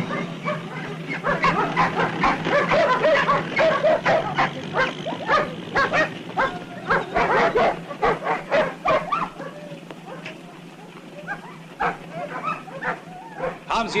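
Dogs barking over and over, several barks a second, thinning to a few scattered barks after about nine seconds.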